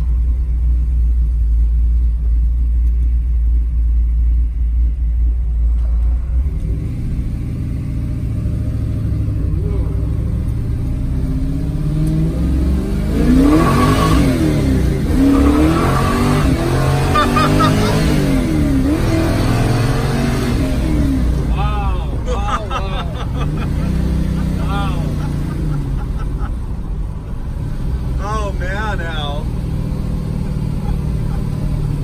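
Heard from inside the cabin, a 1968 Camaro's 700-plus-horsepower engine under way on the road: a steady low exhaust drone for the first several seconds, then the engine pulls harder about seven seconds in, its pitch climbing and dropping repeatedly through the middle before settling back to a steadier drone.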